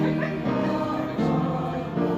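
A choir singing a slow hymn in long held notes that change pitch every half second to a second.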